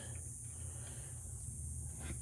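Quiet background with a low steady hum and faint hiss; no distinct event.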